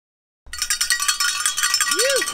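Cowbells being shaken in quick, continuous ringing strokes, starting about half a second in.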